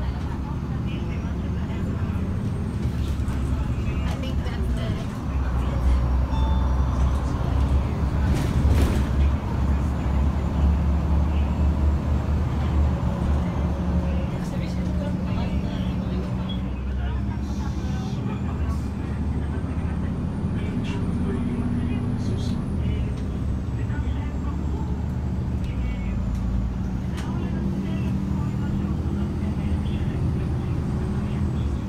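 Inside a moving city bus: the engine's low drone and road noise, growing louder about five seconds in as the bus pulls away and gathers speed, with scattered small rattles from the cabin.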